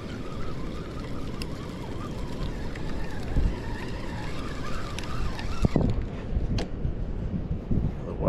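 Wind buffeting the microphone in a steady low rumble, under the faint whir of a spinning reel as a small whiting is reeled up to the pier. A few sharp clicks come through, two of them in the second half.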